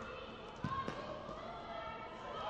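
Two dull thuds of a futsal ball on the hard gym court, about a quarter second apart, a little over half a second in, echoing in the large hall.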